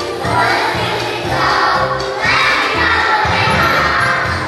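A choir of young children singing together, with a short break between phrases about halfway through.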